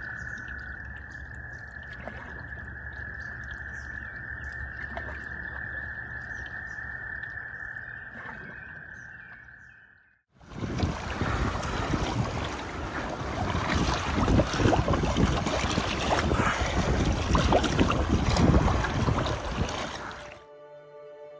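Frogs calling in a steady, high-pitched chorus over calm water. About ten seconds in it fades out, and a louder, even rushing noise with small crackles takes over until the end.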